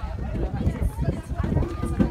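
Voices of nearby people talking, unclear and not directed at the microphone, over a steady low rumble, typical of wind buffeting a phone microphone outdoors.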